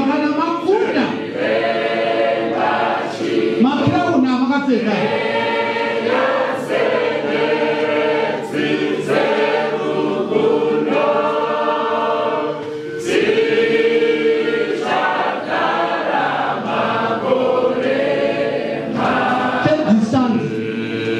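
Choir singing a hymn in long, held phrases, many voices together.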